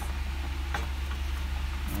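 Steady low hum, with a light click about three-quarters of a second in and another near the end as the hinged lid of a GoWise USA air fryer is lowered shut.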